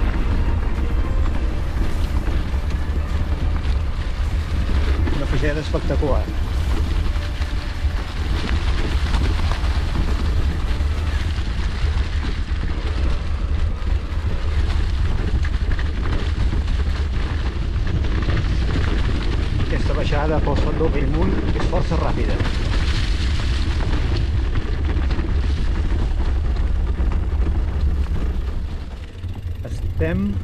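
Wind buffeting the microphone as an e-bike descends a leaf-covered forest trail: a steady low rumble with tyre and trail noise over it. It eases briefly about a second before the end.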